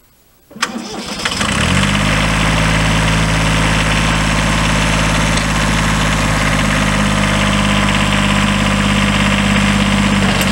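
Kubota B7100's three-cylinder diesel engine is started: a click as the starter engages about half a second in, a second of cranking, then it catches and settles into a steady idle.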